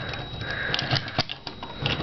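Plastic parts of a Transformers Animated Deluxe Swindle figure clicking and knocking as its arms are swung down and around, a few scattered sharp clicks.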